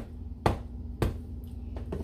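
A handful of sharp, irregularly spaced taps of a table knife knocking against a mixing bowl and cupcake as whipped cream is scooped and pushed into the cupcakes, over a low steady hum.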